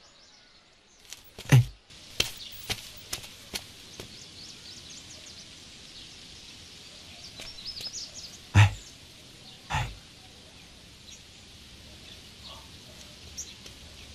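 Birds chirping faintly in the background. Over them come a few dull thumps, one about a second and a half in and two around eight and a half and ten seconds, and a quick run of four sharp clicks just after the first thump.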